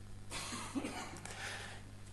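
A faint, muffled cough over a low steady hum.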